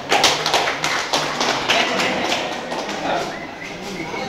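A quick, irregular run of sharp taps lasting about three seconds, with voices underneath, thinning out toward the end.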